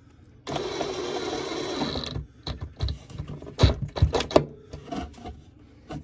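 DeWalt cordless driver fitted with a right-angle attachment runs for about a second and a half, driving a screw with a washer into a cabinet panel, then stops. A string of clicks and a few heavy knocks follow.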